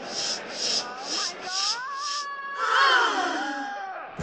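Recorded playback track for a stage dance: a steady hissing, shaker-like beat about twice a second, then a pitched sound that glides up, holds and slides down.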